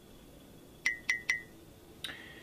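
Three quick, light clinks about a quarter of a second apart, each with a brief high ring.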